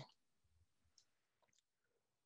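Near silence in a pause between speakers, with two faint clicks about a second and a second and a half in.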